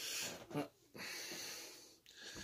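A person breathing out heavily close to the microphone, twice: one breath at the start and a longer one from about a second in that fades away.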